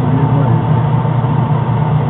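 Gas clothes dryer running with its access panel off: the drive motor and turning drum give a steady, loud hum.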